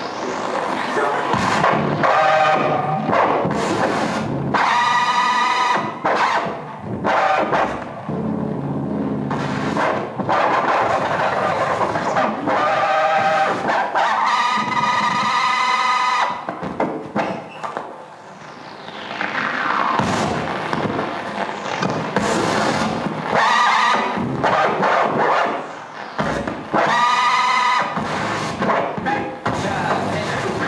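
Live experimental noise music played by hand on an amplified wooden box fitted with springs and metal rods: a dense scraping, rattling texture, broken three times by loud squealing pitched tones a few seconds long, with one falling glide past the middle.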